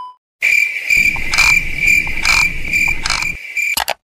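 Edited-in transition sound effect: a steady, high-pitched chirping buzz with a regular pulse about once a second, in the manner of crickets. It cuts off abruptly just before the end.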